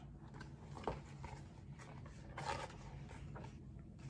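Faint handling of a hardcover picture book as a page is turned: a few soft rustles and taps, the clearest about a second in and about two and a half seconds in, over quiet room tone.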